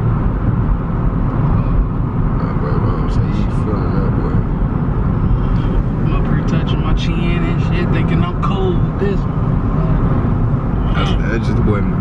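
Steady low rumble of engine and tyre noise heard inside a moving car's cabin.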